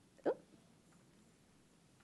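One short throat or breath sound from a woman at a microphone about a quarter second in, then a pause of quiet room tone.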